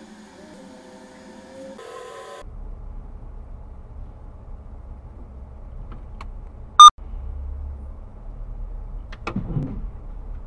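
A car sideswiping a parked car: a low vehicle rumble, then one very loud, sharp hit about seven seconds in as the passing car strikes the parked car's body. A couple of smaller knocks follow near the end.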